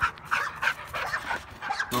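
A bully-type dog panting in a series of quick, short, breathy puffs.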